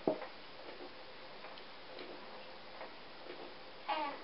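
Faint, irregular light clicks of a looming hook catching on the plastic pegs of a Knifty Knitter long loom as the yarn loops are lifted over them.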